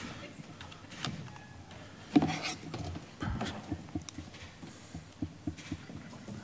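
Irregular soft knocks and clicks of a laptop and microphone being handled at a lectern, with one louder brief burst about two seconds in.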